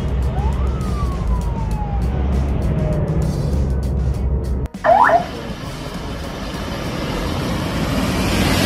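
Engine and road rumble from a moving car, with a vehicle siren sounding one long wail that rises quickly and then falls slowly. After a brief cutout about five seconds in, a short, loud siren whoop, then traffic noise that swells toward the end.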